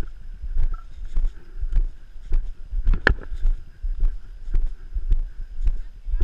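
Walking footsteps on leaf litter and asphalt, about two steps a second, each a sharp click with a low thump on a body-worn camera's microphone. The sharpest click comes about halfway through.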